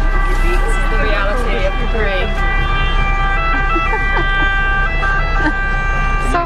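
Steady low rumble inside a bus, with people's voices and held, stepping musical tones over it.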